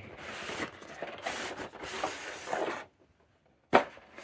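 Cardboard box and plastic packing tray rubbing and scraping against each other as the tray is slid out, uneven and lasting about three seconds. After a short pause there is one sharp knock near the end.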